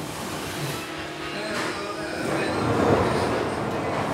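A stainless-steel sausage rack trolley being moved, its metal frame and casters rattling and rumbling, growing louder a little past halfway.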